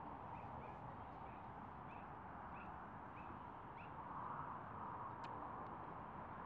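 A bird calling faintly: a run of about eight short, high notes spaced roughly half a second apart, stopping about four seconds in. Behind it is the steady rush of busy road traffic close by.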